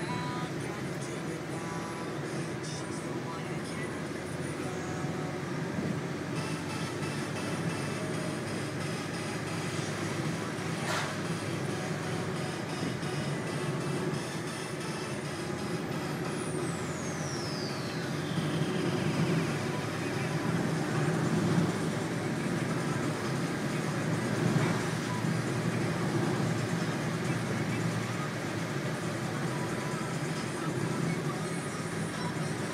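Car cabin noise while driving: a steady rumble of engine and tyres on the road, heard from inside the car and getting a little louder in the second half.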